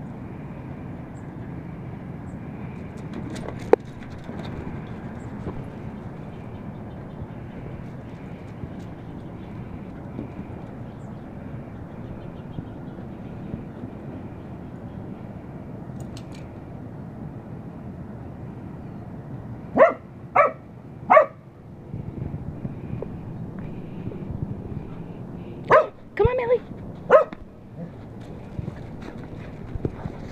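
A dog barking in short sets: three sharp barks about twenty seconds in, then four more a few seconds later, over a steady low background noise.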